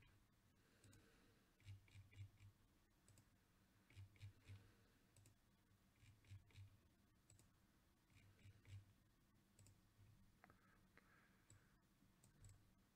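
Faint computer mouse clicks in quick groups of two or three, about every two seconds, as a web page's randomize button is pressed repeatedly.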